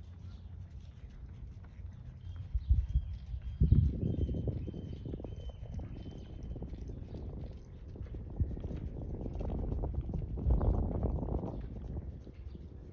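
A horse's hoofbeats on a sand arena at walk and trot, with a low rumbling noise that swells a few seconds in and stays loud.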